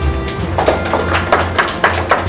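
Music with a steady low bass line and sharp percussive hits a few times a second.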